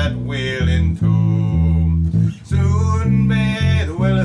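Electric bass guitar playing a bass line in A minor, with low notes changing about every half second. A man's singing voice joins over it in places.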